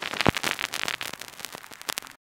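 Irregular crackling and popping, like the surface noise of old film or a worn record. A sharper pop comes about a quarter second in, and the crackle grows fainter toward the end.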